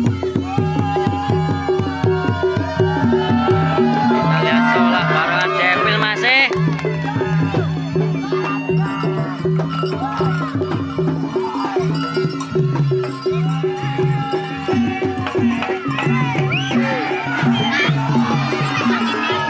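Live jaranan (East Javanese horse-dance) ensemble: kendang barrel drums beat fast strokes while kenong pots and gongs repeat a steady low pattern, with a sliding, wavering melody line above.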